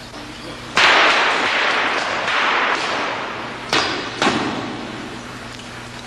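Squib bullet hits going off on an actor's costume while a spark gun sprays sparks: a sudden loud blast about a second in, followed by a hissing spray that fades over several seconds, with two more sharp cracks near the four-second mark.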